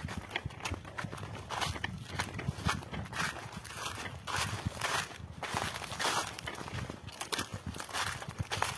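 Footsteps crunching through dry fallen leaves and loose soil on a hillside path, at about two to three steps a second.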